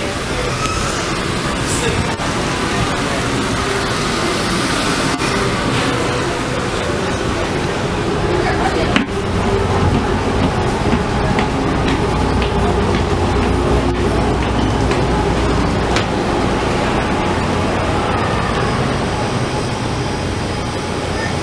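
Steady low drone of the M/V Kaleetan ferry's onboard machinery filling the passenger cabin, with people talking in the background. The low hum grows louder about halfway through, and there is one sharp click around the same time.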